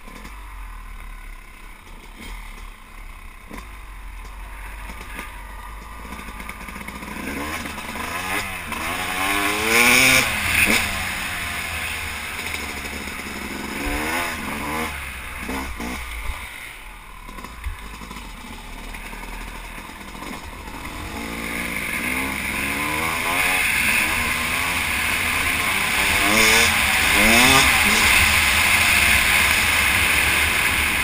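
Yamaha YZ250 two-stroke dirt bike engine revving up and down in repeated sweeps as it is ridden along a trail, with wind rushing over the bike-mounted microphone. The revving is loudest about ten seconds in and again near the end.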